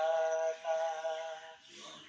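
Hindi devotional Hanuman bhajan music: a long held sung note that fades out about one and a half seconds in.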